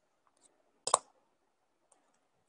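A sharp double click about a second in, the loudest thing here, with a few faint ticks before and after it.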